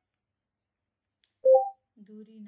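Silence broken about one and a half seconds in by a short electronic beep of two notes, stepping up in pitch.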